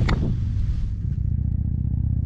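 A car engine idling steadily, with a single short knock just after the start.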